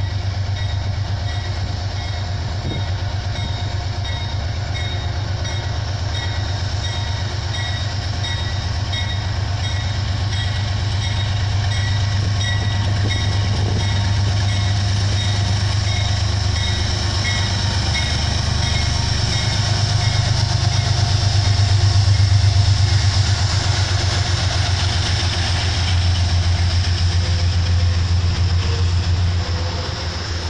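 Metro-North GE Genesis P32AC-DM diesel locomotive pulling a passenger train slowly past, its diesel engine running with a loud low hum that swells as it draws alongside. Its bell rings steadily through the first half.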